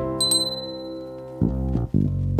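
A single short, high ding, a notification-bell sound effect, about a quarter second in, ringing out over half a second, over background music with sustained keyboard-like notes.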